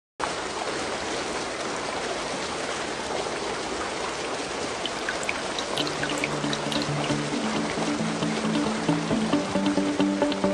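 A steady rush of flowing water opens the song's intro, with a few bright droplet-like plinks around five seconds in. About six seconds in, low held musical notes come in over the water and the music slowly builds.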